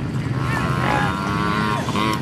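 Honda CRF110 youth dirt bike's small single-cylinder four-stroke engine running at an even, high pitch, then easing off near the end.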